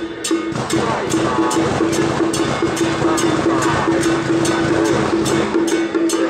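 Traditional temple-procession music: a wood block clacking a steady beat about two and a half strokes a second, with drums under a held wind-instrument note that breaks off and resumes.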